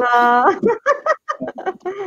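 A drawn-out, high-pitched voiced exclamation, then a quick run of laughter, from people greeting each other over a video call.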